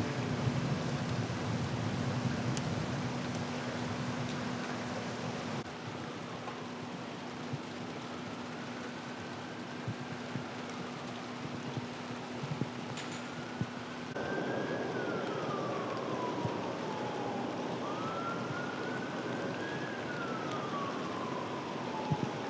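A faint emergency-vehicle siren wailing in slow rises and falls over steady wet-street background noise, with a low steady hum under the first half that stops about two-thirds of the way in.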